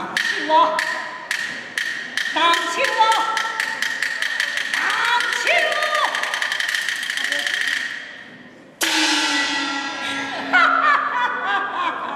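Taiwanese opera percussion: sharp wood-block strokes that speed up into a rapid roll, with actors' high-pitched stylized calls over them. Just before nine seconds in, a loud gong crash rings out with a slowly falling tone, and more stylized calls follow.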